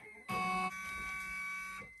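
Happy Japan HCS2 embroidery machine's pantograph carriage being driven by its motors to the start position after power-up: a steady electric whine of several held tones. It is loudest for about the first half-second, then carries on softer and fades near the end.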